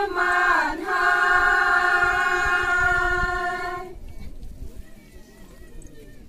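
A group of women singing a Naga folk song in unison, holding one long note that breaks off about four seconds in. A pause with only faint low background noise follows.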